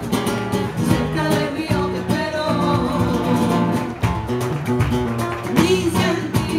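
Live band music with a strummed guitar, a steady percussion beat and sung vocals.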